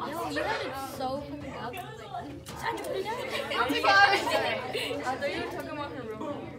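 Background chatter of several voices talking at once in a classroom, no single voice clear.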